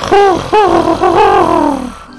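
Wordless creature call of a giant fantasy moth, performed by a voice: two short rise-and-fall coos, then a longer wavering note that sinks toward the end. It is a delighted reply that sounds like a cat-like purr.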